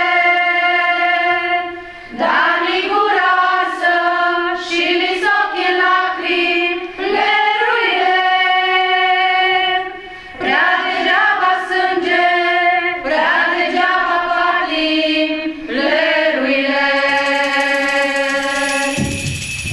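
A group of women singing together from song sheets, held notes in long phrases with two short breaks between them.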